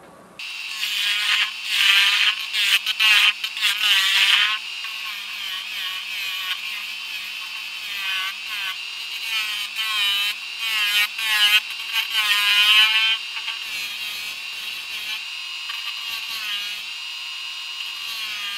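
A gouge cutting a spinning lid on a Powermatic 3520B wood lathe, heard sped up, so it comes across as a high, warbling screech that swells and fades with each pass. It is loudest for a few seconds from about a second in and again around twelve seconds. The cuts are clearing away super glue that was used to fill cracks in the lid.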